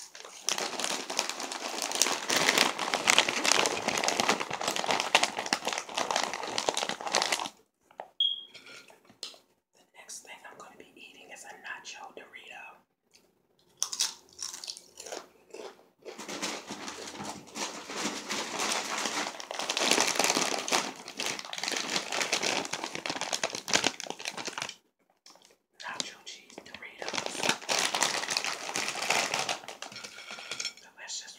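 A crinkly plastic snack bag of puffed cheese doodles being handled and rattled, in three long bouts of dense crackling with quieter stretches between.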